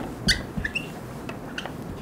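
Felt-tip marker squeaking on a whiteboard while handwriting, a few short high squeaks, most of them in the first second.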